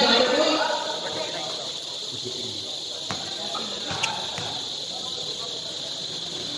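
A voice briefly at the start, then steady background hiss with two sharp knocks about three and four seconds in, a basketball bouncing on the court.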